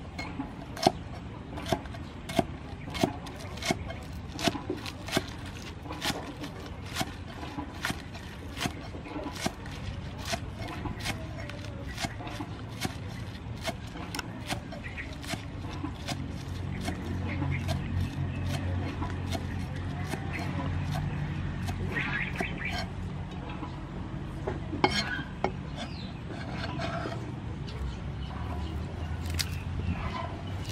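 Steel cleaver chopping green onions on a wooden chopping board: a steady series of knocks, about two a second, quickening in the middle and stopping about halfway through. A low steady rumble follows in the second half.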